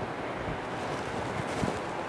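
Steady, even rushing noise of room tone, with no distinct events.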